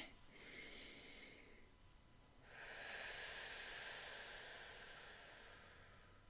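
Faint breathing of a woman relaxing with her eyes closed: a short breath, then a longer, slower one of about three seconds.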